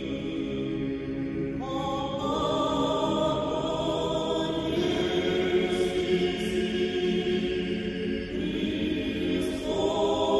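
Choir singing slow sacred chant in long held chords that move to new chords a few times.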